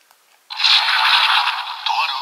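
Electronic toy Wonder Ride Book's speaker starting its opening sound effect: after a faint click, a sudden loud, thin swooshing, scraping effect with no bass begins about half a second in and carries on. This is the sound the toy plays when its cover is opened.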